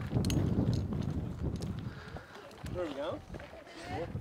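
Footsteps of several people walking on a gravel road, with faint distant voices about three seconds in.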